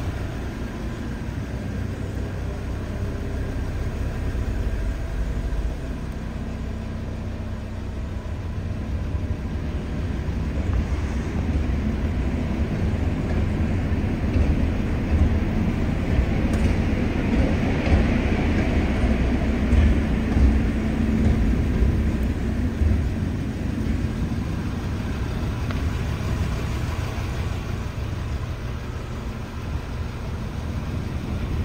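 2023 Audi RS 3's turbocharged 2.5-litre inline five-cylinder engine idling steadily with a low drone, growing louder for several seconds in the middle before easing back.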